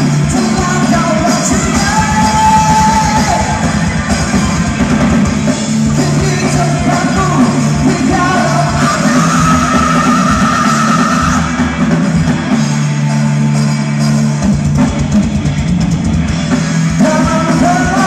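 Live rock band playing: distorted electric guitars and a drum kit, with a singer.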